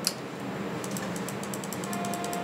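MRI scanner running a scan: a steady hum with a rapid, even clicking that starts about a second in, roughly eight clicks a second.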